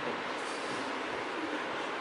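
Steady, even background noise of the room: a constant hiss with no clear events.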